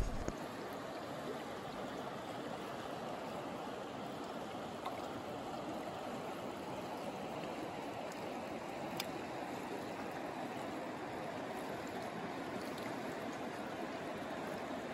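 Steady rushing and gurgling of a shallow, fast river flowing over a rocky riffle, unchanging throughout.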